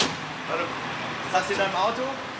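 Steady background noise of vehicles with brief snatches of talking voices, starting straight after music cuts off abruptly.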